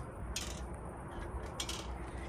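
Metal playground swing moving back and forth, its hangers giving two brief creaks, about half a second and a second and a half in, over a faint low rumble.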